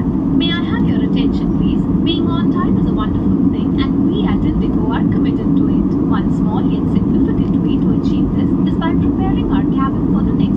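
Steady roar of engines and airflow inside a jet airliner's cabin in cruise flight. Scattered passenger voices run faintly underneath.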